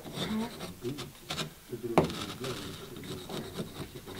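A blade scraping and cutting into a small soft stone practice block in short strokes, scoring the first outline line, with a sharper click about two seconds in.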